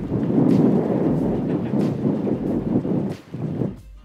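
Strong gusty wind buffeting the microphone: a loud, rough, fluctuating rumble that drops away shortly before the end.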